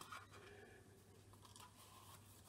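Near silence: room tone with a few faint handling ticks from a wire-wound plastic spool being turned in the hands.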